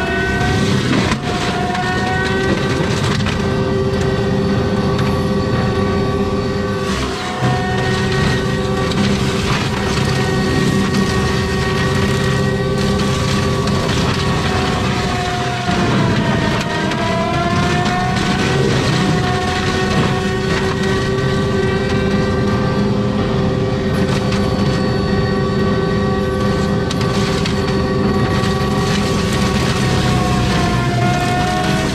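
Forestry mulcher head on an ASV RT-120F compact track loader grinding through brush, a steady, loud engine-and-drum whine that sags in pitch a few times as the rotor bogs under load and then recovers, with crackling of wood being shredded.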